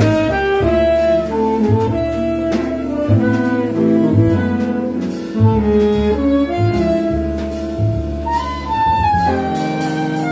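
Live jazz quintet playing a ballad: alto and tenor saxophones play the melody together in long held notes over piano, upright bass and drums.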